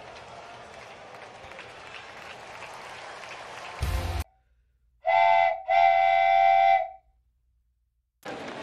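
Steady ballpark crowd murmur that cuts off suddenly. About a second later come two loud horn-like blasts at one steady pitch, a short one and then a longer one, which are an inserted sound effect.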